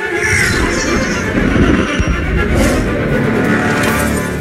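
Animated action-film soundtrack: orchestral score under loud, dense action sound effects with a heavy low rumble.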